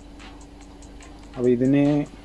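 A quiet, rapid, regular ticking, about five ticks a second, over a steady low hum. About one and a half seconds in, a man's voice draws out a word and is the loudest sound.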